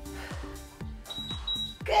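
Interval timer beeping twice in a high steady tone about a second in, marking the end of a 20-second work interval. Under it, background dance music with a steady kick-drum beat.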